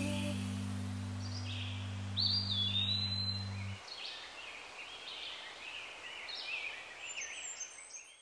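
A held low chord of closing music fades and stops about four seconds in, while birds chirp in short high calls that go on more quietly afterwards and fade out near the end.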